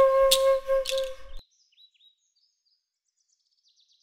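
Wooden transverse flute holding one long, steady note that cuts off sharply about a second and a half in. Faint high bird chirps follow.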